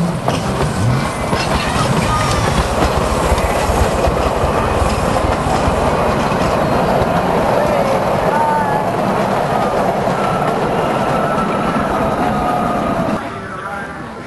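A small train running on the track, with a loud steady rumble and rattle of wheels and cars and a few thin squeals on top. The noise drops off suddenly about a second before the end.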